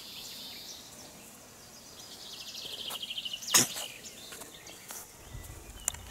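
Outdoor garden ambience with a short, rapid, high trill of a small songbird about two seconds in, followed by a single sharp knock, the loudest sound.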